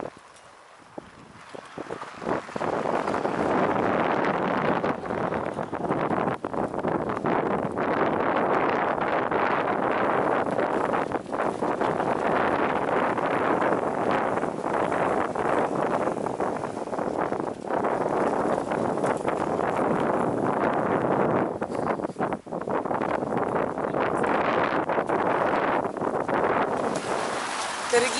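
Wind buffeting the microphone: a steady rushing noise that comes up about two seconds in and holds, with brief dips.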